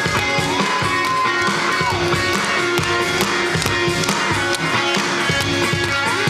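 Live rock band playing: electric guitars and a drum kit at full volume, with a long held note sustained from about half a second to two seconds in.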